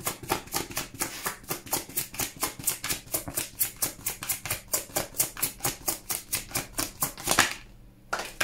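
A deck of tarot cards being overhand-shuffled by hand: quick, even card slaps at about five a second, stopping suddenly near the end.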